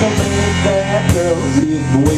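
Live rockabilly played by a duo: electric guitar with sliding, bending notes over a plucked upright doghouse bass and a foot-drum beat, with a sharp drum hit about a second in.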